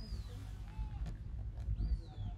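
Sheepdog handler's whistle commands to a working Border Collie: short high whistles that rise and then fall, one at the start and another near the end, with a lower whistled note between them, over a low steady rumble.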